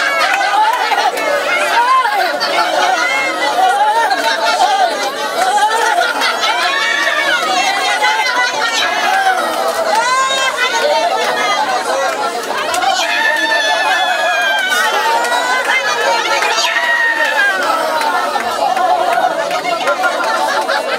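Many people praying aloud at once, their voices overlapping in a continuous loud babble, with some rising and falling calls above it.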